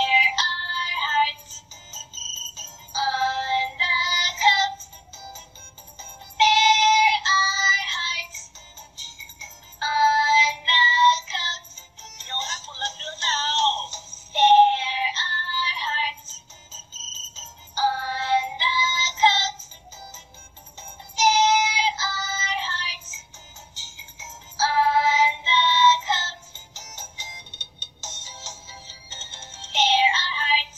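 A short sung children's song with backing music, played back by a talking reading pen. Sung phrases come about every three to four seconds, with short gaps between them.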